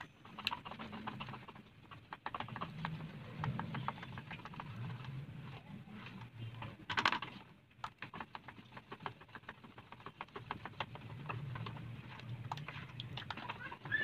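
A hand stirring and squeezing a thin flour batter in a plastic bowl, making many small, quick wet clicks and pats, with a louder brief sound about seven seconds in.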